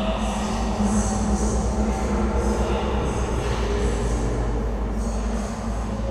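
Dark horror ambient soundscape: a steady, dense low drone and rumble under held tones, with high squealing tones that swell and fade several times.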